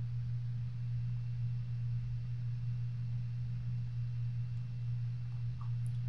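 Steady low electrical hum, one unchanging tone with faint hiss over it.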